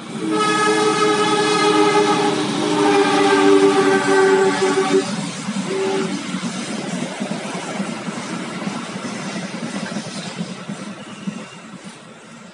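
A passing train sounds its horn in one long steady blast of about five seconds, then a brief second blast, over the rumble of the train rolling by, which slowly fades away.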